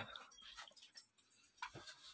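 Near silence: room tone, with one faint short sound near the end.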